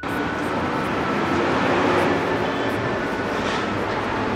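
Steady outdoor background noise with a vehicle-like rumble, swelling slightly around the middle.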